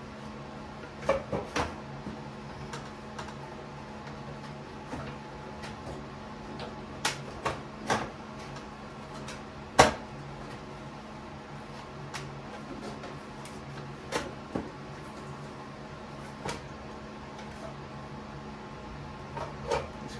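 Plastic bonnet panel of a Kubota BX2370 tractor knocking and clicking against the frame as it is worked on by hand, its side tabs being fitted into their slots. The knocks are scattered, the loudest about ten seconds in, over a steady low hum.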